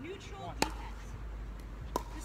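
Two sharp pops of a pickleball struck by a paddle, about a second and a half apart, under a man talking.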